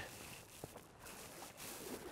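Faint, steady rush of river water, with a small tick about half a second in.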